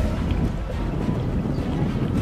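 Low, steady rumbling noise like wind buffeting the microphone, with faint music beneath it.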